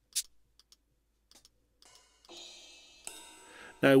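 Single drum samples from an auto-sampled Yamaha RX11 drum machine played back one at a time in a software sampler. There is a short bright hit just after the start, then a few faint ticks. From about two and a half seconds in come two longer ringing drum sounds, the second brighter.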